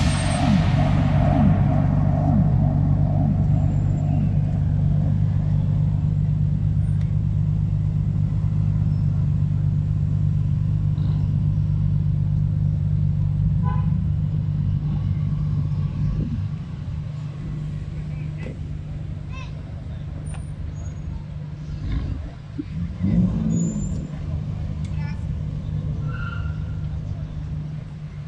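BMW car engines running at low revs as cars pull away slowly past the microphone, a steady low hum that drops in level about halfway through, with a brief swell of engine sound a little after two-thirds of the way in.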